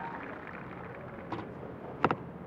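Faint outdoor ambience of an archery range, with a single faint sharp click over a second in.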